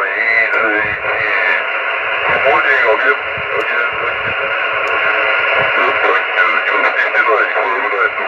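Single-sideband voice from a ham radio receiver, relayed through an amateur satellite transponder. It sounds narrow and telephone-like, with a steady hiss under the speech.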